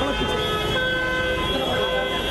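Car horn held down in one long, steady blast, with voices under it.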